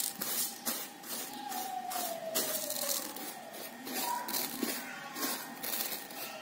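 Dry basmati rice grains rustling and scraping on a steel plate as fingers push and spread them, in irregular strokes.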